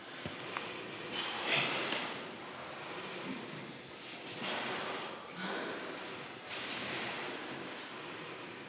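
Slow, audible breaths in and out through cloth face masks, one swell every second or two, as people recover after holding a low leg stance. A small click sounds just after the start.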